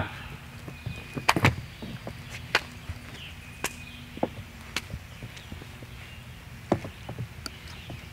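Irregular sharp knocks and taps of feet stepping and pivoting on a wooden deck, with the odd slap, during a slow shadow-boxing drill. The strongest pair comes a little over a second in.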